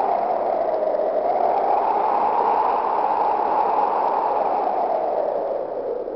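Desert wind blowing: a steady rushing noise whose pitch slowly rises and falls in long swells.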